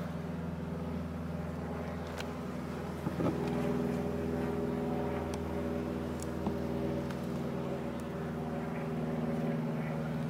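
Honeybees humming steadily around an open hive, with a few faint clicks from the wooden frames being handled.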